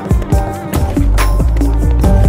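Electronic remix music: a deep sustained bass under sharp percussive hits and pitched melodic notes.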